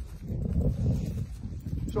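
Footsteps of a person walking across a stubble field, with wind buffeting the microphone as an uneven low rumble.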